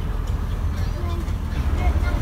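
Steady low rumble aboard a wooden speedboat under way, with faint voices in the background.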